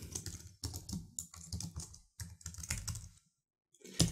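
Typing on a computer keyboard: a quick run of keystrokes that stops about three seconds in.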